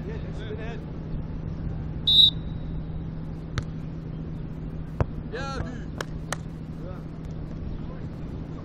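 A beach volleyball rally: sharp slaps of hands striking the ball, four of them in the second half, with a brief shout among them. A short, shrill whistle about two seconds in is the loudest sound, over a steady low hum.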